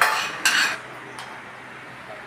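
Spoons scraping and clinking against plates as several people eat. There are two louder scrapes in the first second, then it goes quieter with a single faint click.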